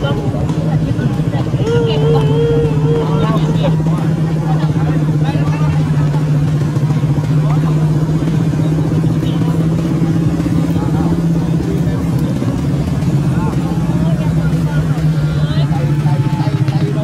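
A nearby engine running steadily at idle, a low even drone that holds for the whole stretch. People's voices rise over it, with a drawn-out cry about two seconds in.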